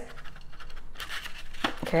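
Cardstock being handled and slid against a plastic Umbrella Builder craft punch: scratchy rustling and scraping, with a sharper scrape about a second in.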